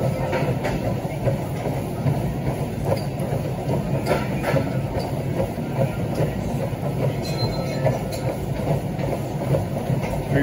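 Gym treadmill running under walking footsteps: a steady low hum from the motor and belt with a regular beat of footfalls.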